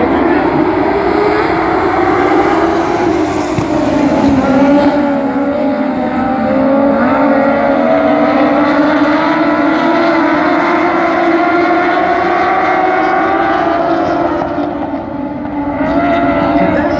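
Several dwarf-car race engines running together on a dirt oval. Their notes overlap in a steady drone whose pitch wavers up and down slowly.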